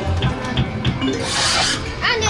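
Amusement arcade noise: electronic music and jingles from the fruit machines, with a few short clicks in the first second and a brief hiss about one and a half seconds in.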